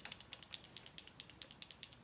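Fast, even train of small clicks, about ten a second, from a makeup container or applicator being worked in the hands.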